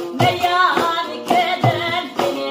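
A woman sings a Dolan muqam melody with sliding, ornamented notes. She is accompanied by sharp strokes on a hand-struck frame drum (dap) and a long-necked plucked lute.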